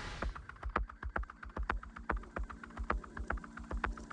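Rapid, irregular clicking and tapping, several sharp clicks a second, over soft low thuds and a faint steady hum.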